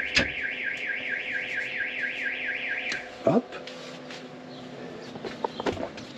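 Electronic warbling siren, a fast rising sweep repeated about five times a second, sounding for about three seconds from a horn-symbol switch on the truck's interior panel before cutting off; it serves as a call signal to summon the family. A short sound follows just after it stops.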